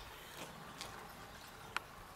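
Faint, steady trickle of black waste residue running from a waste-oil distiller's steel outlet pipe into a funnel, with one short click near the end.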